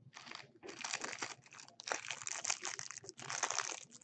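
Clear plastic wrapper of a 2019 Panini Certified football card pack crinkling in a string of short crackly bursts as it is handled.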